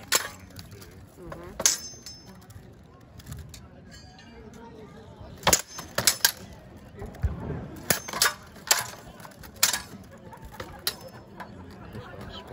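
Steel swords striking plate armour and shields in an armoured sparring bout: about nine sharp metallic clangs at irregular intervals, with a quick run of blows in the second half.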